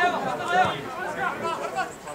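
Several men's voices shouting and calling to one another across a football pitch during play, overlapping.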